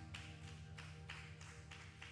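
An acoustic guitar's final chord dying away, under slow, sparse clapping at about three claps a second.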